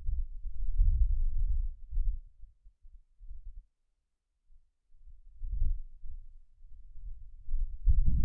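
Irregular low rumbling thuds, with a brief dead-quiet gap in the middle.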